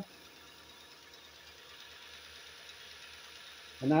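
Single-phase low-speed bench grinder motor, driven three-phase from a VFD and turning a 2x36 belt grinder attachment, running with a faint steady whir and hiss. It grows slightly louder as the speed is brought up to about 1100 RPM.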